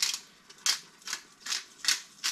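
Hand pepper grinder being twisted over the pot: five short, gritty grinding turns in quick succession, about two to three a second.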